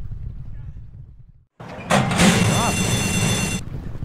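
Horse-race starting gate springing open with a sudden crash, the starting bell ringing over track noise for about a second and a half, then cutting off; it signals the start of the race. Before it, low track noise fades to a brief silence.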